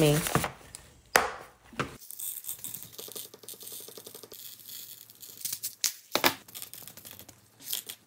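Red crystal rhinestones poured from a plastic scoop into a clear plastic compartment box: a dense run of tiny clicks as the stones fall, with sharper plastic clicks and taps now and then and a louder clatter near the end.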